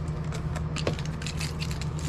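Small clicks and light rattling of hard swimbait lures and a plastic tackle box being handled, with one sharper click just under a second in, over a steady low hum.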